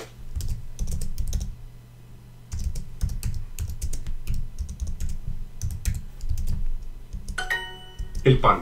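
Computer keyboard typing in two quick runs of key clicks, then, near the end, the Duolingo correct-answer chime, a short bright ding of several tones.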